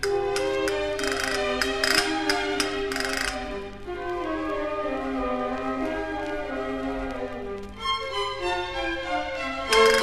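Spanish Baroque music for chamber orchestra and castanets. Rapid castanet rattles sound over the strings for the first three seconds or so. The strings then carry the melody alone, and the castanets and full band come back loudly just before the end.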